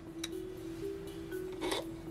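Background music: a single sustained low note held steady. Near the end comes a short sniff at a small vial.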